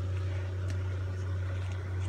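A steady low-pitched hum, unchanging throughout, with a few faint clicks over it.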